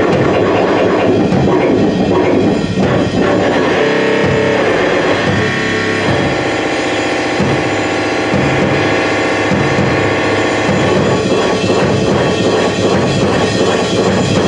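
A drum kit played loud and fast in a live set, with dense snare, tom and cymbal strokes. From about four seconds in until near eleven seconds, a steady pitched drone runs under the drumming.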